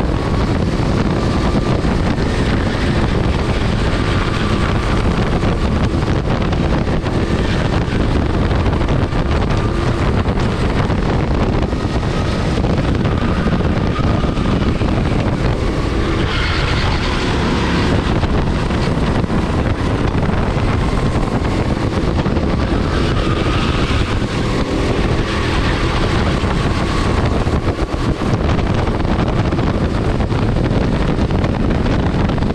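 Go-kart engine running hard at racing speed, its note wavering up and down through the corners, under heavy wind noise on the onboard camera's microphone. A little past halfway a louder rush of hiss lasts about two seconds.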